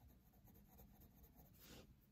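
Faint scratching of a pencil crayon on paper while colouring, with one clearer stroke near the end.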